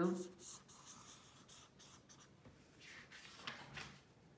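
Felt-tip pen drawing a wavy line on notebook paper: a faint, scratchy rubbing of the tip across the page, with small ticks.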